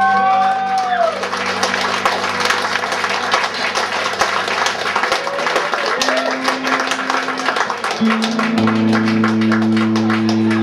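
Two electric guitars playing a droning improvised piece: held notes with sliding pitch bends at first, then a long stretch of rapid, scratchy picking, and steady low drone notes return about eight seconds in.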